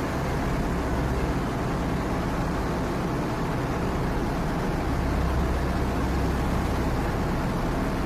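Steady ambient noise of a ship at sea: an even rush of wind and water over a deep, low rumble that grows a little stronger about five seconds in.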